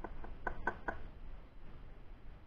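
About five light clicks in quick succession during the first second: small plastic parts of a disassembled intake manifold runner control solenoid being handled and set down on a workbench.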